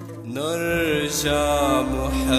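Music: a male voice rises into a long, wavering melismatic note about a third of a second in, over steady sustained accompaniment.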